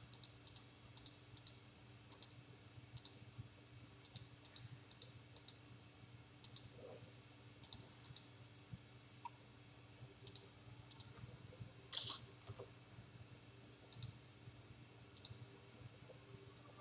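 Computer mouse clicking: about eighteen short, sharp clicks at an irregular pace, many in quick pairs, with a slightly louder one about twelve seconds in.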